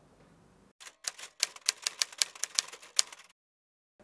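Typewriter keys typing as a sound effect: a quick run of sharp clicks, about six a second, starting just under a second in and stopping suddenly about two and a half seconds later.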